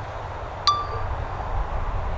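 A single short electronic beep from the drone's controller about two-thirds of a second in, as the Mavic 2 Zoom sets off on its automated Helix QuickShot, heard over a steady low wind rumble on the microphone.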